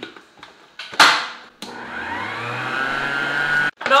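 Electric stand mixer with a wire whisk beating chilled whipped cream: a sharp knock about a second in, then the motor runs steadily with its pitch rising as it picks up speed, cutting off abruptly near the end.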